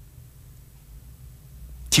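A pause in a man's speech with only a faint low hum; his voice comes back in abruptly near the end.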